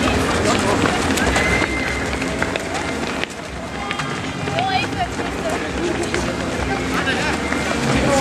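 Footsteps of many runners in running shoes on an asphalt road, a dense run of overlapping taps as a pack passes, with voices among them.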